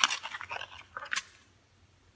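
Paper pages of a printed owner's manual booklet being turned, with a few short crisp rustles and crackles in the first second or so.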